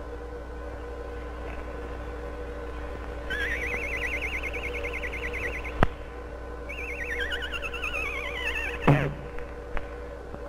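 Cartoon whistle sound effect warbling with a fast wobble: it rises and holds for about two seconds, a sharp click follows, then a second warbling whistle slides downward and ends in a thump near the end. A steady hum of an old film soundtrack runs underneath.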